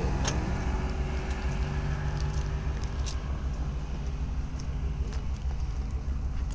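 A car driving, heard from inside: a steady low rumble of engine and road noise with an even engine hum, and a couple of brief clicks.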